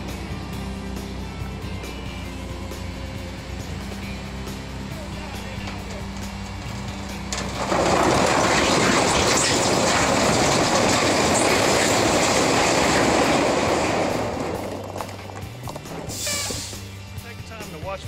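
Heavy dump truck's diesel engine running steadily, then about eight seconds in a loud rushing rumble of riprap rock pouring out of the dump bed that lasts some six seconds and tapers off. A short hiss follows near the end.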